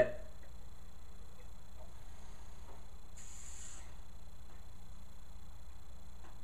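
Quiet room tone with a steady low hum, and one brief soft hiss a little after three seconds in.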